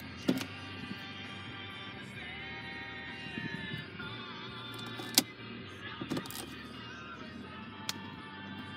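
Music with singing playing from the car's FM radio over the cabin speakers. A few sharp clicks or knocks break in, the loudest about five seconds in.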